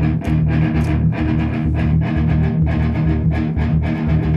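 Amplified electric guitar strumming a chord in quick, even strokes, about five a second, with a heavy low end.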